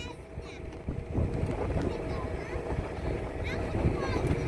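A hay wagon riding along: the steady drone of the engine pulling it, low rumble from the wagon and wind on the microphone.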